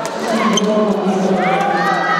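Badminton rally on an indoor court: sharp racket strikes on the shuttlecock and shoe squeaks on the court floor, with squeaks from about one and a half seconds in, over a steady murmur of crowd voices.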